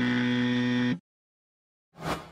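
Electronic buzzer tone from a graphics sound effect, held steady for about a second and then cut off abruptly. After a short silence, a sudden hit starts right at the end.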